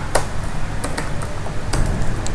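Computer keyboard keys clicking: a handful of separate keystrokes as a word is typed, over a low steady hum.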